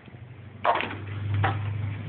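A car engine running with a low steady hum that swells louder partway through, with two sharp knocks over it, the first about half a second in and the second a second later.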